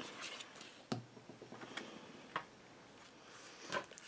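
Faint paper-crafting handling sounds: a light tap about a second in, then a few small clicks and soft paper rustles as a glued paper panel is laid down and pressed flat by hand.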